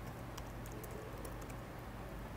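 Faint typing on a computer keyboard: a scatter of light key clicks over a steady low hum.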